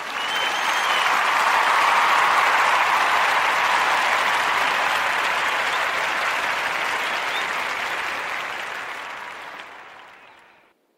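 Crowd applause, a dense even clapping that swells over the first couple of seconds and then slowly fades out toward the end.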